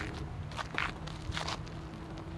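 Footsteps on the ground: three scuffing steps roughly two-thirds of a second apart, over a low steady rumble.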